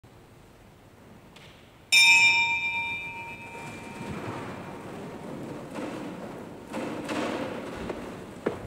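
A bell struck once about two seconds in, a bright metallic ring of several tones that fades over about a second and a half in a reverberant church. Quieter rustling and a few soft knocks follow.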